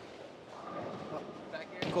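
Steady background din of a bowling alley, an even noisy hum with no distinct strike or crash.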